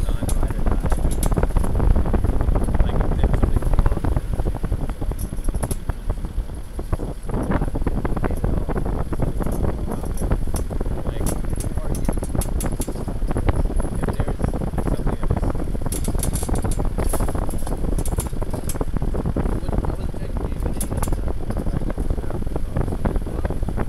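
Wind buffeting the microphone over the running noise of a vehicle moving along a rough dirt track, with occasional light clicks and rattles.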